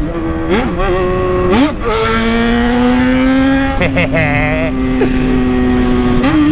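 Yamaha XJ6's 600 cc inline-four engine running through an open exhaust with no muffler ("só o cano"), accelerating on the road. Its note rises and drops sharply twice in the first two seconds, like quick gear changes, then holds a steady, slowly climbing pitch.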